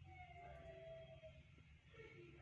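Near silence: a faint low background hum, with one faint drawn-out tone lasting about a second near the start.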